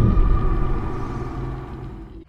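The tail of a cinematic logo sting: a deep rumbling boom dying away, with a faint held tone fading with it.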